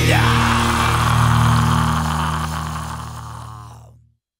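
The last chord of a melodic death metal song, with distorted guitars and bass held and ringing out. It fades steadily through the second half and dies away to silence at the very end.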